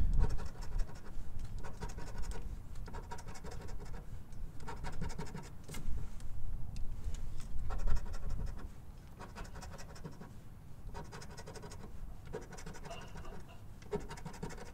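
Coin scraping the coating off a paper scratch-off lottery ticket in quick repeated strokes, louder for the first eight seconds or so and softer after.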